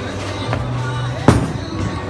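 A single sharp, loud thud about a second and a quarter in as a bowling ball is released and lands on the lane, over background music with a steady bass beat.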